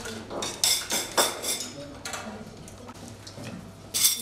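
Metal serving tongs and utensils clinking against plates and trays, a few sharp clinks in the first second and a half, over background voices.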